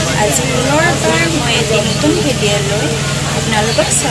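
A woman talking over the steady low rumble of a passenger train coach in motion.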